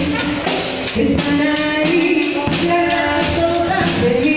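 A military regimental band, clarinets among its instruments, playing a song with a woman singing lead into a microphone, with held notes over a steady beat.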